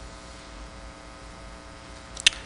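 Steady electrical mains hum with a faint hiss.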